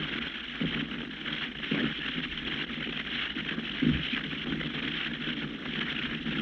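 Steady hiss of an old radio transcription recording, with a few faint, brief low sounds about a second in, near two seconds and near four seconds.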